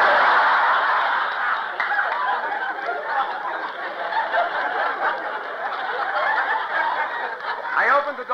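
Studio audience laughing at a joke on an old radio broadcast recording. The laughter starts all at once, is loudest at first, and carries on for several seconds until the dialogue resumes.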